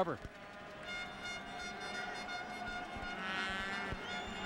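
Stadium crowd noise with sustained horn-like tones, several steady pitches sounding together, starting about a second in, some of them rising in pitch near the end.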